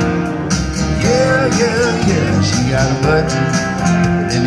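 Live country-style band music: strummed acoustic guitar with piano and electric guitar playing along.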